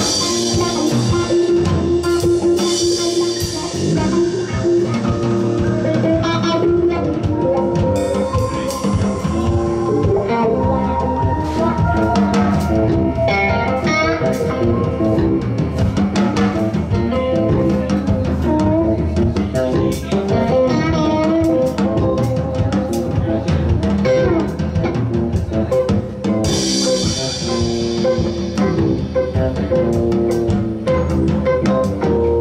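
Live band playing: drum kit, electric guitar and keyboard together in a steady groove, with cymbals ringing out near the start and again near the end.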